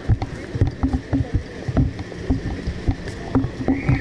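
Handling noise from a handheld camera carried at a walk in a marching street crowd: irregular low thumps, two or three a second, over a rumbling street background. A high steady tone comes in just before the end.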